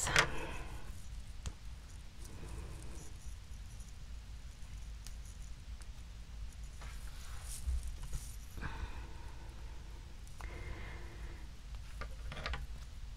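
Faint handling of small plastic pieces: fingernails picking and peeling excess hot glue off tiny clear plastic eye-drop bottles, with soft rustles and light clicks over a steady low hum.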